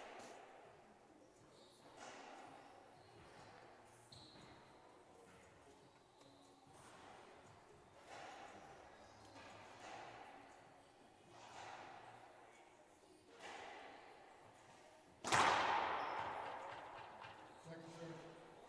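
A racquetball bounced on a hardwood court floor, a faint thud every second or two with a ringing echo. About fifteen seconds in comes one much louder crack with a long echo: the ball struck hard, racquet on ball or ball on the wall.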